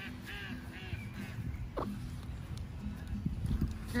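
Ducks calling faintly: a few short calls in the first second or so, over a low rumble.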